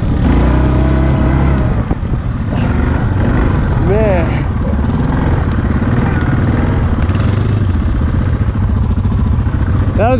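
Yamaha Grizzly 700 ATV's single-cylinder four-stroke engine running under way through tall grass and brush. About four seconds in comes a brief rising-and-falling voice exclamation.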